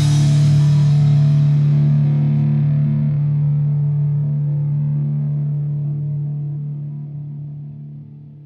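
Sludge/post-rock music: the full band cuts off and a distorted electric guitar chord is left ringing out, slowly fading, its upper tones dying away first until only a low hum remains near the end.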